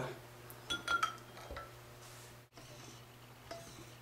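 A few light clinks of a hobby servo against a drinking glass of water about a second in, one ringing briefly, with a faint steady low hum underneath.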